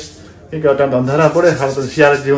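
A man talking close to the phone after a brief pause of about half a second.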